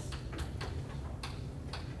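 Chalk tapping and clicking against a chalkboard as numbers are written: a run of sharp, uneven taps, several a second.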